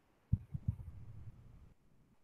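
Marker writing on a wall-mounted whiteboard: a few soft, low taps of the pen against the board about a third of a second in, then faint scratching as the stroke goes on.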